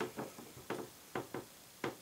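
Metal glow-plug cross wrench turning a plastic wing bolt to tighten it a little more: a string of small, irregular clicks and ticks.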